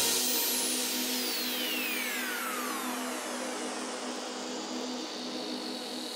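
Electronic dance music in a beatless breakdown: a noise sweep with tones gliding down in pitch over about three seconds above a held low note, slowly fading.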